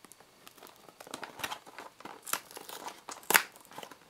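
Paperboard snack box being opened by hand: the perforated tear-tab on its lid is pressed and torn, giving crinkling and small sharp crackles of card. The sharpest crack comes a little over three seconds in.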